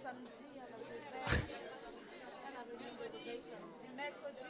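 Low murmur of several people talking over one another in a room, with a single short knock about a second and a half in.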